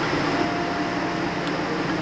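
Steady mechanical hum and hiss, with a single faint click about one and a half seconds in.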